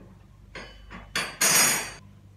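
Metal clatter from a gas stove being handled while it is cleaned: a couple of light knocks, then a loud clank and a longer loud clatter with a ringing edge about a second and a half in.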